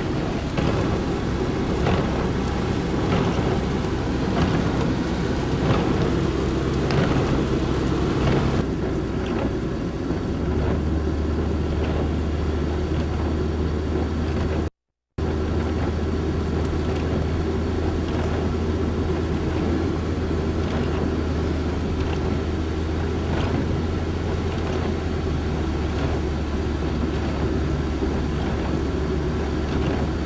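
Steady drone of a vehicle driving on a wet highway, heard from inside the cabin: engine and tyre noise with rain and windshield wipers. Irregular light taps fill the first third. The sound cuts out briefly about halfway.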